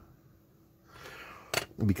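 A quiet room, then about a second in a short, soft intake of breath, followed near the end by a man starting to speak.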